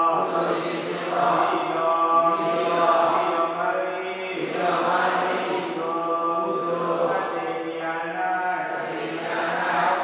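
Buddhist chanting: a steady, continuous recitation on held tones, with no pauses.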